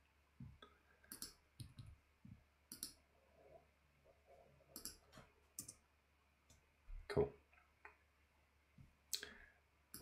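Faint, scattered clicks of a computer mouse and keyboard keys, about a dozen spread out, with a louder one about seven seconds in.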